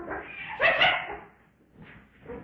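Animal calls from Hanna-Barbera's zoo ambience sound effect. The tail of one call trails off at the start, and a louder, short call comes about half a second in and fades out soon after.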